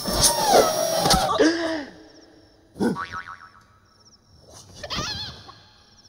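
Cartoon-style comedy sound effects: springy 'boing' pitch glides with a couple of sharp knocks in the first two seconds. About three seconds in comes a quieter strike with falling tones, and about five seconds in a wavering, whistle-like tone.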